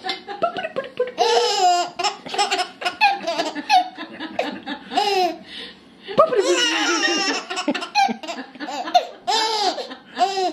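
A baby laughing and squealing in repeated high-pitched bursts, with the longest, loudest stretches about a second in, around six to eight seconds in, and near the end.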